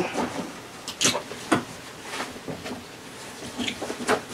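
Nylon tactical backpacks being handled: fabric rustling with a few short knocks and scrapes, one about a second in and another about half a second later.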